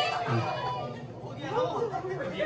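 Several people talking and chattering at once, indistinct, just after the music playing before has stopped.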